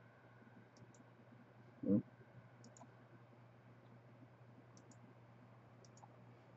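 Faint computer mouse clicks, mostly in quick pairs, four times over a few seconds, against a low steady hum. A brief low vocal sound about two seconds in is the loudest thing.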